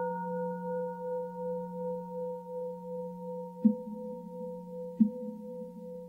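Singing bowl ringing on after being struck, a low hum with a few higher overtones that waver slowly and fade gently. From about three and a half seconds in, soft low taps join in a slow even beat, about one every second and a third.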